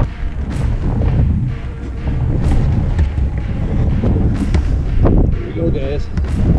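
Wind rumbling and buffeting on the microphone, with sharp knocks about two seconds apart.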